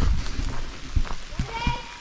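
Footsteps on a leaf-littered dirt path with camera-handling rumble, a few scattered knocks; a faint high child's voice calls briefly near the end.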